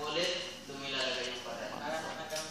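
A man's voice slowly intoning Arabic words, the questions of the grave such as 'Man rabbuka?' (Who is your Lord?) and 'Ma dinuka?' (What is your religion?).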